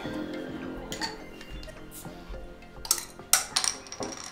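Soft background music fading out, then a few sharp clinks and knocks in the last second or so, like a glass bottle being handled and knocked against something as someone settles in.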